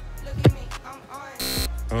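Background music with a football struck by a kick just after the start, then a short loud buzz about one and a half seconds in.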